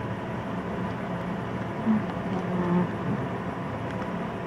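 Steady background hum and room noise, with a couple of faint, short sounds about two and two-and-a-half seconds in.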